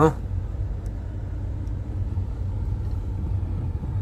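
Steady low rumble of a car's engine and road noise, heard from inside the cabin while the car drives along.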